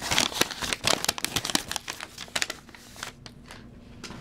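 White paper wrapping crinkling and rustling as hands unfold a small folded paper packet of trading cards, a quick run of crackles over the first two and a half seconds that thins out and goes quieter near the end.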